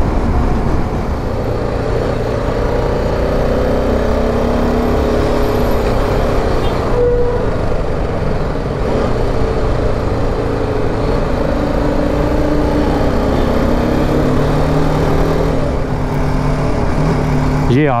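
BMW G310 GS single-cylinder motorcycle engine running while riding in city traffic, its note rising and falling a little with speed, under steady wind noise on the microphone.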